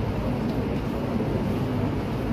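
Steady low rumble of room noise in a large hall, with no clear events standing out.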